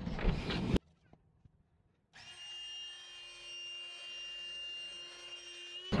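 Cordless inflator/deflator running in a steady motor whine with a rush of air, drawing the air out of a vinyl ballast bag. It starts about two seconds in and stops just before the end. Before it, a short rush of noise cuts off abruptly under a second in.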